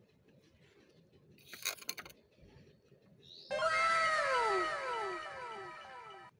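A sound effect edited in about three and a half seconds in: a run of overlapping cat-like pitched calls, each sliding downward in pitch, cut off suddenly nearly three seconds later. A few faint clicks come before it.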